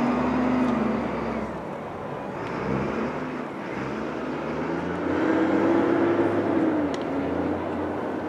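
A motor vehicle's engine running close by, its pitch rising and falling twice, loudest just after the start and again from about five to seven seconds in.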